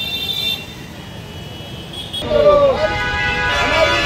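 A vehicle horn sounds over street traffic and cuts off about half a second in. About two seconds in, a group of men start shouting protest slogans together, many voices overlapping.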